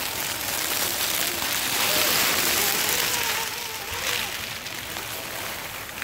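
Dry leaves crunching and rustling under the tyres of an Axial SCX10.2 RC crawler as it drives close past, loudest about two seconds in and fading after four, with the thin wavering whine of its electric motor and gears.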